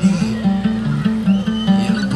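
Live bluegrass band playing an instrumental stretch between sung lines: upright bass walking steadily underneath, with acoustic guitar, banjo and mandolin picking above. A bright high note glides up and holds briefly about one and a half seconds in.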